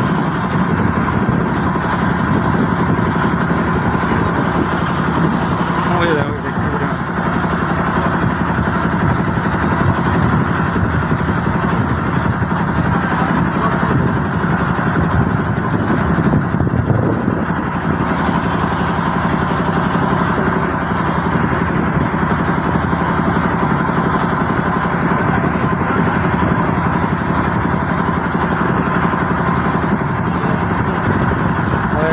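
A boat's engine running steadily at cruising speed, a constant loud hum with no change in pitch.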